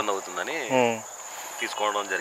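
A steady high-pitched insect drone runs under a man's voice, which speaks briefly in the first second and again near the end.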